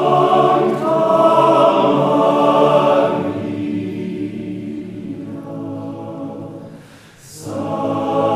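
Mixed four-part choir singing a cappella in sustained chords, loud for the first three seconds and then softer, with a short break between phrases near the end before the next phrase starts.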